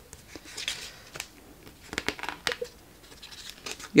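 Paper rustling in short, scattered bursts with a few light clicks as the pages of a sticker pad are handled and flipped.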